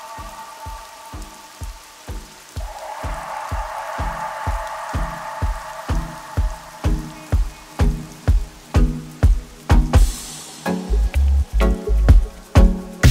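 A dub track starting up: a steady pulse about twice a second under a held chord, growing louder, with a hissing swell about ten seconds in and heavier bass hits near the end.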